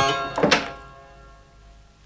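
A door being shut with a single thunk about half a second in, while a keyboard chord from the score dies away.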